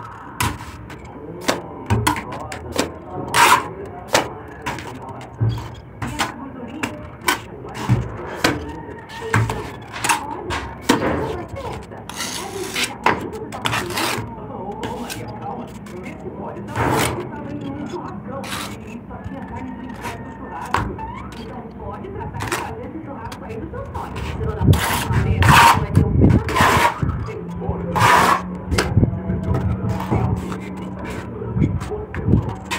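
Repeated sharp knocks from building work, about one a second at first and then more scattered, with a stretch of scraping and voices in the background.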